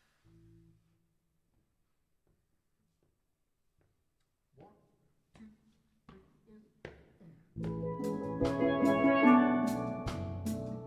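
Near silence, then a few soft scattered hits, before a steel band of tuned steel pans with drum kit and electric bass starts playing a reggae tune about three-quarters of the way in, pans ringing over a steady beat with sharp cymbal strokes.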